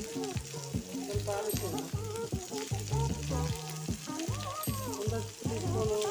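Moringa drumstick pieces and onion sizzling in a hot steel pan, a fine steady crackle. Louder background music with a bending melody plays over it.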